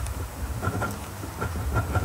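A pen writing on paper laid on a lectern right under its microphone while the memorandum is signed. It comes through as a low rumble of handling noise with scattered light clicks.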